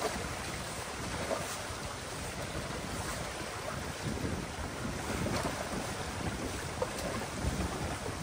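Water rushing and churning through a breach in a beaver dam as the channel drains, with wind buffeting the microphone and a few faint splashes from a rake working in the water.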